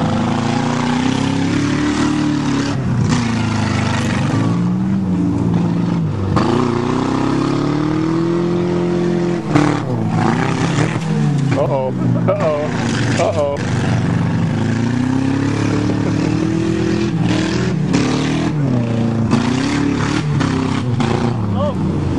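Car engines revving up and down as a Saturn and a Buick sedan ram each other, with crunching hits of metal as they collide.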